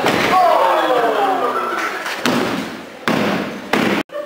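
Wrestlers hitting the ring canvas: a heavy thud right at the start and another sharp one near the end, in a large hall. Between them a long drawn-out vocal 'ooh' falls steadily in pitch.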